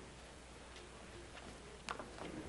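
Bible pages being turned: a few faint soft ticks over low room tone, then a sharper click near the end.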